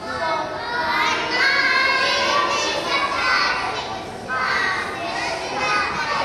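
A group of young children singing together, many high voices at once, with a brief dip about four seconds in.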